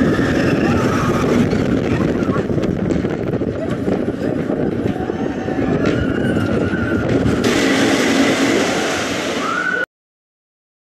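Arrow Dynamics mine train roller coaster running on its track, with a loud, steady rumble from the train's wheels and riders whooping now and then. The sound cuts off suddenly just before the end.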